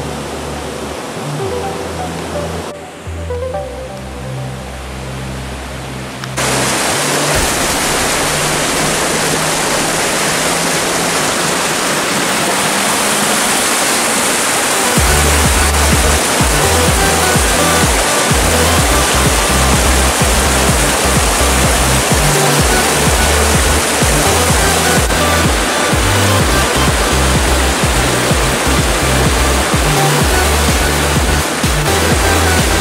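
Background music with a bass line, joined about six seconds in by the loud, steady rush of stream water tumbling over rocks in a small cascade; a heavier bass beat comes in around halfway.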